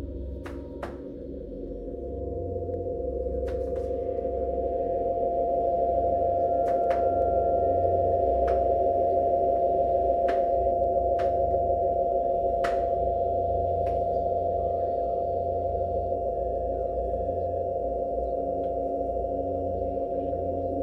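Dense electronic drone of many sine-wave oscillators clustered around a chord of Db, F, Gb, Ab, Bb and C. A steady higher tone enters about a second in, and the whole drone swells louder over the first six seconds, then holds. A dozen or so sharp clicks are scattered over it.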